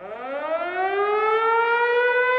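A siren-like tone that starts suddenly, glides up in pitch and grows louder, then levels off: the opening swell of a show intro.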